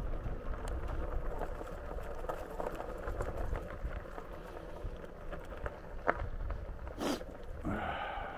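RadRover 5 fat-tyre electric bike riding along a dirt trail: steady tyre rumble and crunch with wind buffeting the camera mic, and two sharp knocks about six and seven seconds in as the bike hits bumps.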